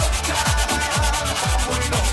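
Sandpaper rubbed by hand over the rusty cast-iron flange face of an exhaust manifold in quick back-and-forth strokes, cleaning the gasket surface. Background music with a steady beat plays throughout.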